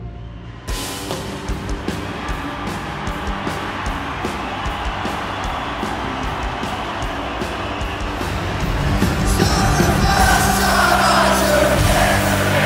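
A live band playing a song in a concert hall: the full band comes in about a second in with a steady drumbeat, and it grows louder near the end.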